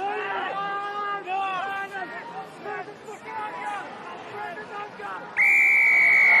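Rugby referee's whistle: one long, steady blast near the end, blown at a scrum to award a penalty. Before it, players shout at the scrum.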